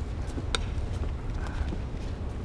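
Steady low room rumble with a few faint footsteps on a hard floor, and one sharper click about half a second in.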